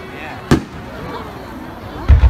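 A single sharp bang from an aerial firework shell bursting overhead, about half a second in.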